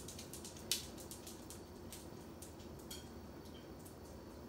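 Faint scattered clicks and taps, one sharper click under a second in, and two very brief high chirps near the end.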